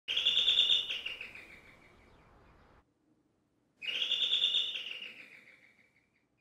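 Electric apartment doorbell ringing twice, about four seconds apart. Each ring is a high trilling chime that starts suddenly and fades away over about two seconds.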